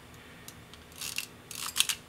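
Speed-setting dial of an Ihagee Exakta VxIIb camera being turned by hand: quick runs of small metallic clicks about a second in and again near the end.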